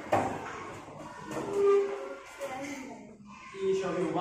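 Young children's voices in a classroom, with a sharp knock just after the start and two short held voice sounds, one near the middle and one near the end.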